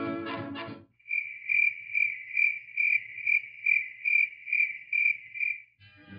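Crickets chirping in an even rhythm, about two chirps a second, laid in as a comic sound effect for an awkward silence. A swing-music cue cuts off just before the chirping starts, under a second in.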